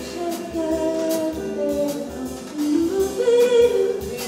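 Live jazz: a woman sings a melody into a microphone, holding a long note near the end, backed by hollow-body electric guitar and a drum kit keeping time on the cymbals.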